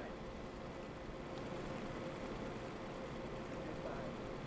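Steady, fairly quiet background noise with a faint steady hum running through it; no distinct event stands out.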